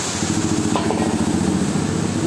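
Chicken pieces deep-frying in a large kadai of hot oil, the oil frothing and sizzling. Under the frying a small engine runs steadily, and there are a couple of light clicks about a second in.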